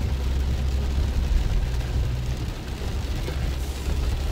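Interior road noise of a car driving in heavy rain: a steady low rumble of engine and tyres, with an even hiss over it.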